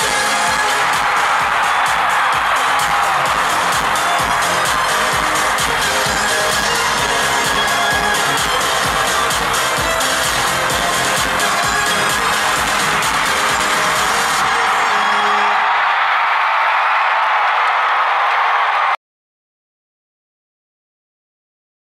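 Live pop music played over an arena sound system, heard from within a loud audience as the song ends. About 15 s in the music drops away, leaving crowd noise, and the sound cuts off abruptly about 19 s in.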